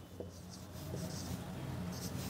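Marker pen writing on a whiteboard: faint strokes of the tip across the board.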